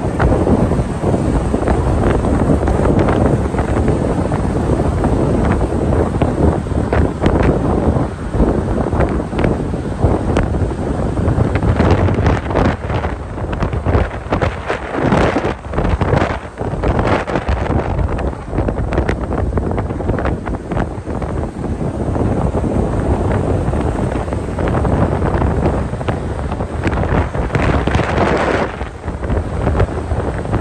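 Wind buffeting the microphone of a phone held in a moving car, a loud, steady rush broken by irregular gusty flutters, over a low rumble of road and tyre noise.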